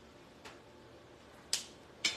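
Small plastic clicks from a Copic marker being handled: a faint tick about half a second in, then a sharper click about one and a half seconds in.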